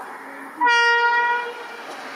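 WAG9 electric locomotive sounding its air horn in one short blast of about a second on a single steady note, over the steady noise of the approaching train.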